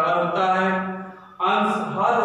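A man's voice speaking in long, drawn-out, sing-song phrases, with a short break a little past the middle.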